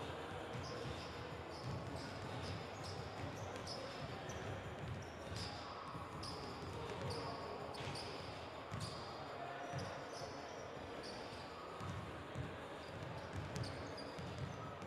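Basketballs bouncing irregularly on an indoor sports-hall court, with frequent short high squeaks of sneakers on the floor and indistinct voices in the hall.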